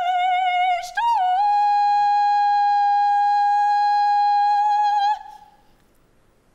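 A woman singing unaccompanied: a short note, then one long, very steady high note held for about four seconds, which stops about five seconds in.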